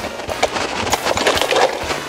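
Folding metal kick scooter rolling over asphalt, then falling and clattering onto the pavement as its rider crashes: a series of sharp knocks and rattles.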